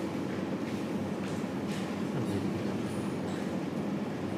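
Steady low room hum, a continuous mechanical drone with a few faint brief rustles or knocks over it.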